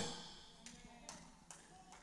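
A voice trailing off into a quiet pause, broken by four faint, evenly spaced taps.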